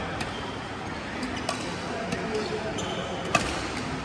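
Badminton rackets striking a shuttlecock: several sharp clicks from play on the courts, with one louder, nearer hit about three seconds in. The hall's background hum and voices run underneath.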